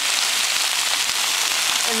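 Kale and beans sizzling in a frying pan: a steady hiss.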